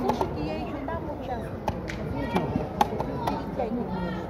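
Sharp wooden clicks and knocks of chess pieces being set down and mechanical chess-clock buttons being pressed in fast blitz play, about five in the span, the loudest a little under three seconds in. Murmured voices of many people run underneath.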